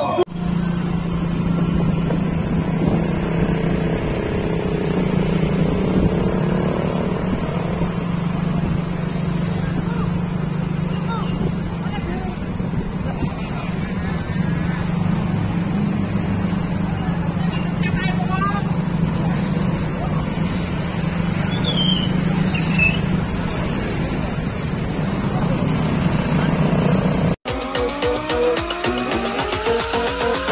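Steady drone of motorcycle engines and road noise from a crowd of riders, with scattered voices. Near the end it cuts abruptly to electronic music.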